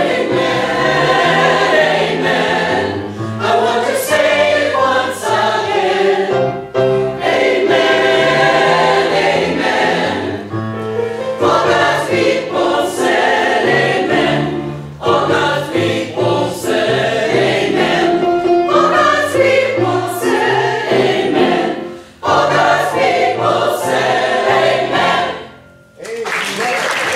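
Mixed adult church choir singing a gospel anthem, full voice in phrases with a brief break about 22 seconds in; the last chord fades out just before the end.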